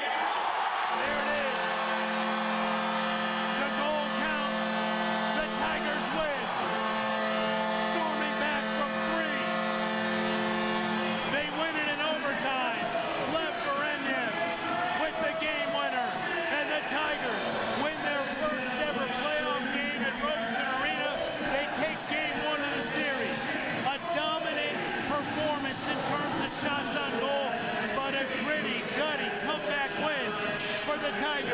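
Arena goal horn blowing one long steady blast of about ten seconds over a cheering crowd, sounding as the overtime winning goal is upheld on review; the crowd keeps cheering after the horn stops.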